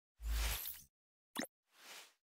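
Logo-intro sound effects: a deep thud with a hiss lasting about half a second, a short sharp pop a little later, and a faint soft swish near the end as the logo appears.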